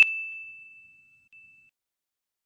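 Notification-bell sound effect: a single high ding, struck just before and ringing out, fading away over about a second, with a faint brief ring of the same tone about a second and a half in.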